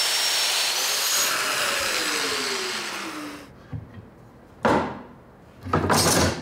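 Festool Domino joiner running and plunge-cutting a mortise into a walnut stretcher, its high whine holding steady before the motor spins down with falling tones from about one to three seconds in. Two short rushing sounds follow near the end.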